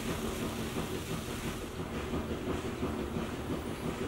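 Steady low background rumble of room noise, with no distinct clicks or knocks; the sausage slices being set down make no clear sound.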